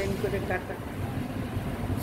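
A woman's voice in a short phrase near the start, then a pause filled by a low steady background rumble.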